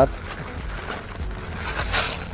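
Thin clear plastic bag crinkling and rustling as it is gathered tight by hand around the top of a plant's polybag, louder near the end.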